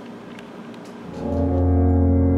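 After a second of quiet room tone, a deep, foghorn-like low brass note swells in and holds steady and loud.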